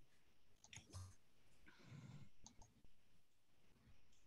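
Near silence on a video-call line, broken by a few faint, short clicks about a second in and again past the middle.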